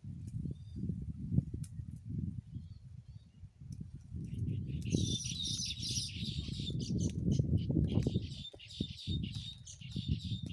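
Small birds chirping, busily from about halfway on, over an uneven low rumble; no engine is running.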